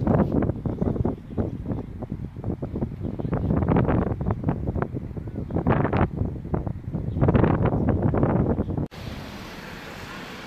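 Wind buffeting a phone's microphone in gusts, a loud low rumble that swells and drops. It cuts off suddenly near the end, giving way to a quieter background.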